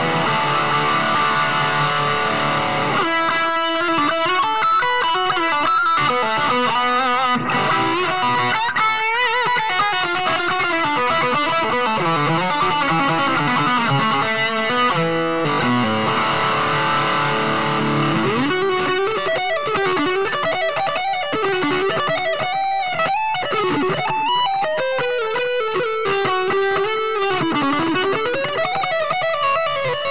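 Lavish Barristan electric guitar with VBR pickups (Bristo neck humbucker, triple-coil bridge) played through a Wang HD-15H amp: a lead solo with fast runs in the first half, then held notes bent and shaken with vibrato.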